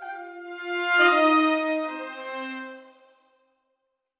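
Sampled brass ensemble (Spitfire Audio Originals Epic Brass, long-note articulation, close mic) playing sustained chords voiced in octaves from a keyboard: one chord, then a louder one about a second in that swells and fades out by about three seconds.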